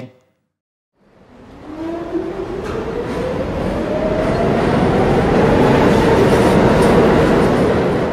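Subway train running past close along a platform, growing steadily louder, with a whine that rises in pitch.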